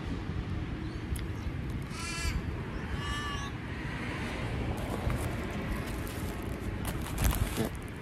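A crow cawing twice, about two and three seconds in, each call drawn out and falling in pitch at the end, over a steady low background rumble. A few soft clicks come near the end.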